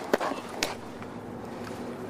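Two sharp cracks about half a second apart: shots from a training pistol during a force-on-force use-of-force drill.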